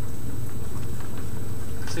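Steady low hum with a haze of hiss and a faint steady high-pitched whine: the background noise of the chamber's sound and recording system while nobody speaks.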